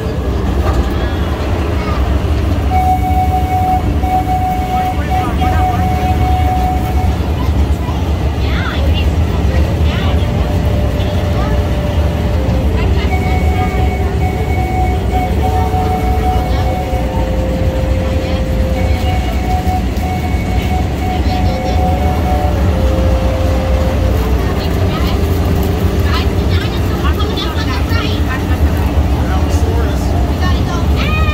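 Miniature passenger train running along its track: a steady low engine and wheel rumble throughout. Over it, a slow melody of long held notes and occasional indistinct voices.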